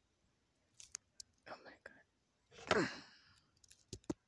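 A person's voice making a soft, brief sound and then a louder cry that falls in pitch about two and a half seconds in. There are a few sharp clicks around a second in and near the end.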